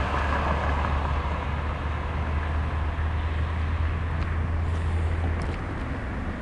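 Road traffic on a wide multi-lane road: cars passing with a steady low rumble and tyre hiss.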